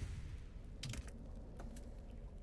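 A few faint clicks of computer keys, a cluster about a second in and another shortly after, over a low steady hum.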